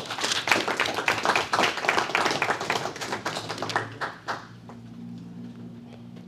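Audience applauding, a dense run of hand claps that fades out about four and a half seconds in, leaving a faint, steady low hum.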